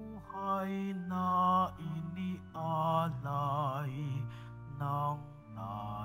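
Offertory hymn during Mass: a voice singing long, slow phrases with vibrato over held low accompaniment notes.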